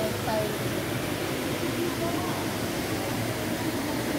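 Steady background noise of a busy shopping-mall concourse, with faint voices of people talking.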